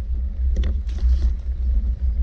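Wind buffeting an action camera's microphone: a steady, uneven low rumble, with a few short knocks about half a second and one second in.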